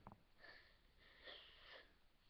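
Near silence broken by two faint sniffs through the nose, a short one and then a longer one about a second in.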